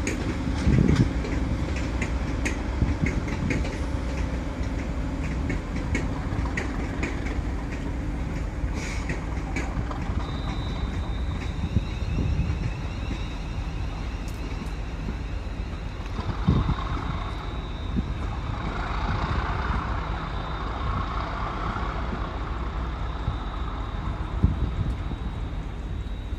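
A train on the move, a steady low drone with light clicks over the first ten seconds. A thin, high steady tone comes in about ten seconds in and stays.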